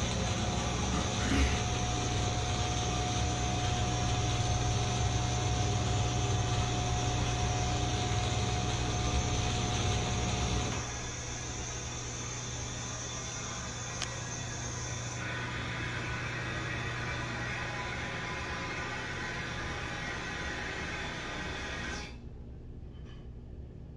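Old Broan ceiling exhaust fan running loud, a steady rush of air over a low motor hum and a thin whine. About halfway through, the hum and whine cut off and the sound drops to a softer steady rush, with one sharp click a few seconds later.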